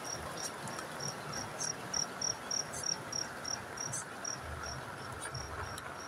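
An insect chirping in an even high-pitched pulse, about three chirps a second, over a steady hiss of rain.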